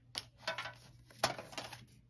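Pokémon trading cards being handled and a card laid down onto a loose pile of cards. A few light clicks and taps, the sharpest just past a second in, with a brief rustle after it.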